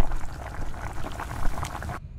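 Tea boiling in a saucepan: a dense, steady bubbling and crackling.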